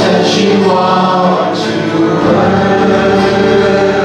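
A congregation and small worship band singing a hymn together in held, sustained notes, accompanied by strummed acoustic guitars.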